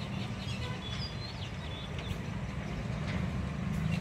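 Birds chirping in short, high calls over a steady low hum.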